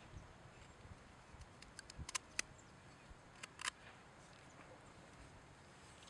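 Folding knife blade shaving a peeled wooden stick to cut a V-notch: faint, short scrapes and clicks of the blade biting the wood, a cluster about two seconds in and another about a second and a half later.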